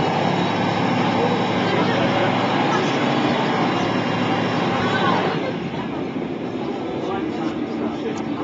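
DAF SB220 bus's diesel engine running hard under load, heard from on board, with a rising whine. A little after five seconds in the engine note eases off sharply.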